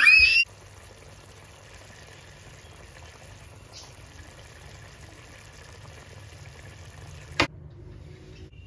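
A child's short rising squeal, then the steady soft hiss of chicken curry simmering in a pan, ending in one sharp click near the end.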